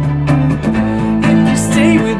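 A small live band plays an instrumental passage: violin over electric guitar and a Roland synth. The low notes shift to a new chord just under a second in, and a violin line with vibrato comes in near the end.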